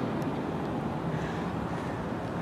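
Steady outdoor background noise: an even low rumble and hiss with no distinct event standing out.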